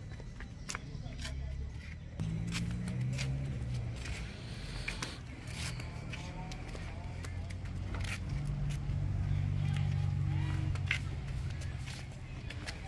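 Faint, indistinct background voices over a low hum, with scattered light clicks of footsteps on concrete steps.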